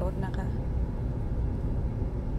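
Steady low rumble of a car's engine and tyres heard from inside the cabin as the car creeps forward slowly.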